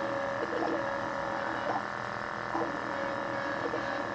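Hyrel Engine HR 3D printer printing: its stepper motors give a steady whine of several tones, with short changes in pitch about once a second as the moves change.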